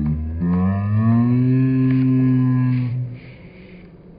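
A person humming one long, low note without words that bends gently up and back down, then stops about three seconds in.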